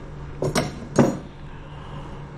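Steel surgical reduction clamps clinking as they are handled: two sharp metallic clinks about half a second apart, the second louder.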